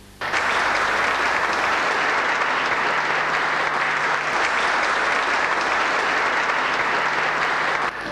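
Audience applauding, starting suddenly and holding at a steady level.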